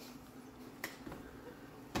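Two short sharp clicks about a second apart over quiet room tone, the second louder.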